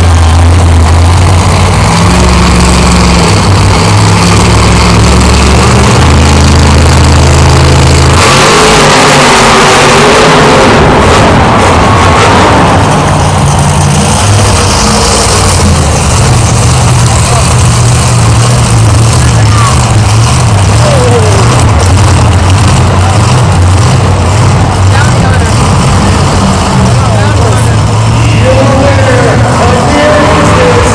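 Monster truck engines running loud and revving, their pitch stepping up and down, with a surge of hard revving from about eight to twelve seconds in.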